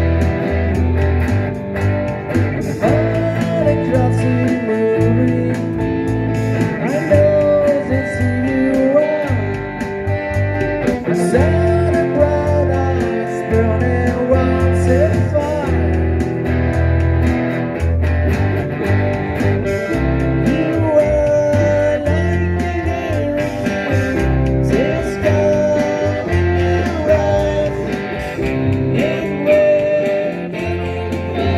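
Live acoustic guitar band playing a slow rock song: guitars over steady bass notes, with a wavering, bending melody line on top.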